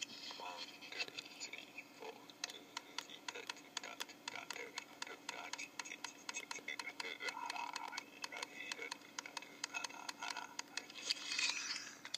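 Playback through a small Sony handheld voice recorder's speaker: a voice with quick, regular taps keeping a steady beat. This is an earlier take from a timing experiment, being played back to check how even the beat is.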